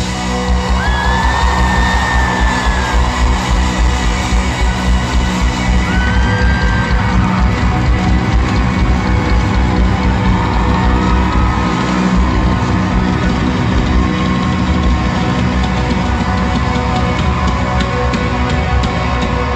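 Live rock band playing loudly: saxophone lines over electric guitars, keyboards and a steady drum beat, with audience yelling and whooping.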